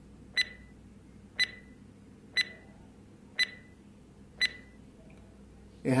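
Quiz countdown timer sound effect: five short, sharp ticks about one second apart.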